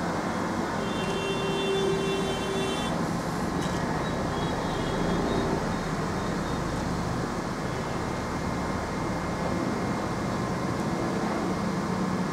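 Steady background noise with a faint high tone between about one and three seconds in.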